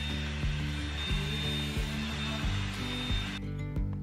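Corded hot-air round brush (blow-dry brush) running: a steady rush of air with a faint high whine. It cuts off suddenly shortly before the end, over background music with a steady beat.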